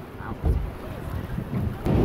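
Wind buffeting the microphone on an open water ride, heard as an uneven low rumble that surges about half a second in. A sharp click comes just before the end.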